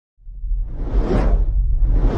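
Cinematic whoosh sound effect over a deep rumble, starting out of silence, swelling to a peak about a second in and fading, with a second whoosh starting near the end.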